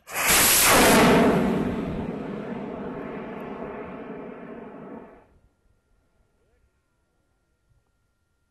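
Hobby rocket motor igniting and the rocket leaving its launch rail: a sudden loud roar that peaks in the first second, fades as the rocket climbs away, and stops abruptly a little after five seconds in.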